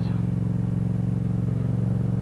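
Motorcycle engine running at a steady, unchanging pitch as the bike cruises along.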